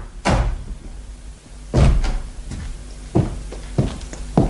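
Three heavy thuds about a second and a half apart, the middle one loudest, with a smaller knock just before the end.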